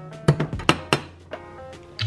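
A wire pastry blender mashing chopped strawberries in a metal saucepan: a few quick knocks and clinks against the pan in the first second, over background music.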